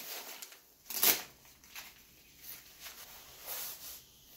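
Rustling of the Eddie Bauer BC Evertherm jacket's thin 15D nylon shell as it is pulled on, with its arms pushed through the sleeves. The loudest rustle comes about a second in, followed by a few softer ones.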